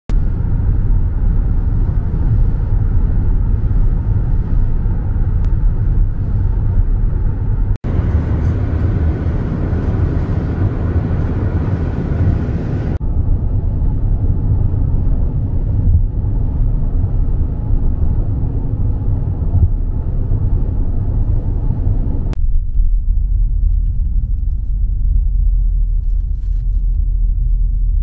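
Road and engine noise heard inside a moving car's cabin: a steady low rumble that changes abruptly several times, hissier from about 8 to 13 seconds and duller in the last few seconds.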